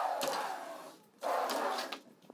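Aluminium-framed sliding fly-screen door rolling along its track, pushed twice with a short pause between: two grainy sliding runs of under a second each.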